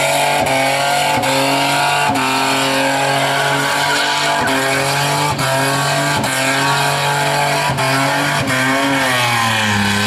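Holden VS Commodore wagon's V6 engine held at high revs through a burnout, rear tyres spinning. The pitch sags and settles lower near the end. The rear brakes were still on, so the engine is working against them.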